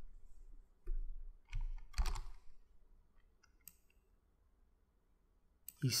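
Computer mouse clicks and keyboard presses, a few sharp clicks in the first two seconds followed by a few faint ticks.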